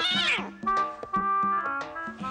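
Cartoon background music with short melodic notes, over which a high, wavering animal cry slides steeply down in pitch within the first half second.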